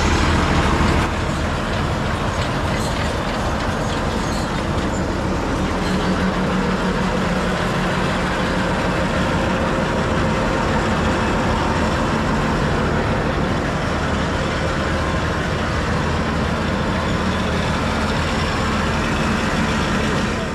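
A tractor's diesel engine running steadily at a constant speed, a continuous mechanical drone.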